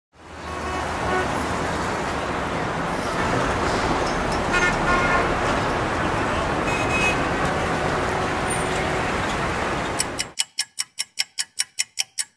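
City road traffic noise, a steady rumble of cars fading in at the start, with car horns sounding twice. About ten seconds in the traffic cuts off abruptly and is followed by a fast run of sharp ticks, about five a second.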